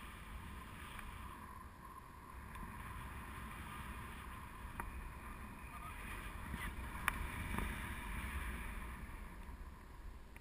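Wind rushing over an action camera's microphone during a tandem paraglider flight: a steady airflow noise that swells a little in the second half, with a few faint clicks.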